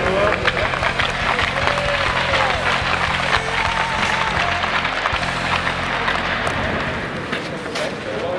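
Audience applauding in an arena over background music, with a few voices mixed in.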